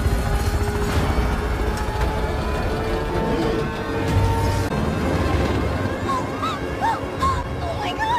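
Film soundtrack music with long held tones over a heavy low rumble, with a few short rising-and-falling vocal-like cries near the end.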